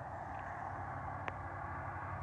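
A vehicle running with a steady low hum and a light hiss, with one small click about a second and a quarter in.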